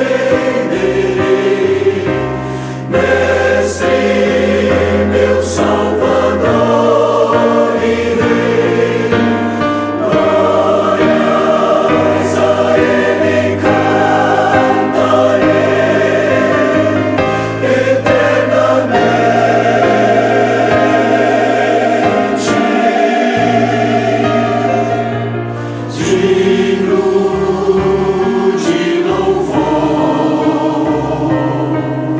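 Choir singing a Portuguese-language gospel hymn in sustained, full chords over a steady bass. The sound dips briefly twice between phrases.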